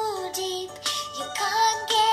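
A young girl singing a prayer in a slow melody, holding each note for about half a second or longer.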